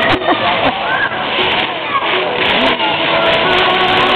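Fountain jets spraying water with a steady hiss, under several voices calling and shouting over it.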